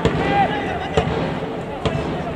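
Football stadium ambience: a steady wash of crowd noise, broken by three sharp knocks about a second apart. A short call from a person's voice comes just after the first knock.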